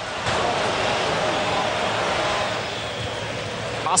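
Stadium crowd noise from a large football crowd: a steady wash of many voices that eases off slightly near the end.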